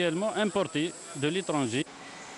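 A man speaking, with a faint steady hiss underneath; his speech stops shortly before the end.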